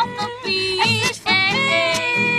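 A woman singing to her own strummed acoustic guitar.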